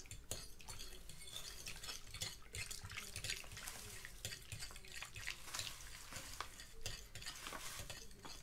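Fork stirring in a glass bowl: faint, quick clinks and scrapes of the tines against the glass as instant mashed potato flakes are mixed into hot milk and water.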